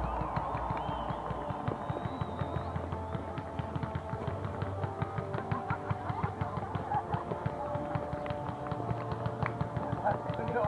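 Fireworks popping and crackling in a rapid, irregular stream, several reports a second, with music playing along.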